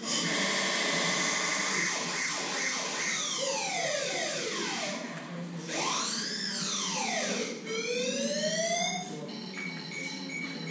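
A stress-inducing montage of annoying, harsh sounds played back aloud. It opens suddenly with a dense, harsh din, then runs into siren-like sweeping tones that fall, rise and fall, and rise again. Near the end a steady high tone comes in.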